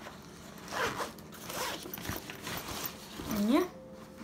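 Backpack zipper being pulled in several quick strokes, each a short scratchy zip. A short spoken "yeah" comes near the end.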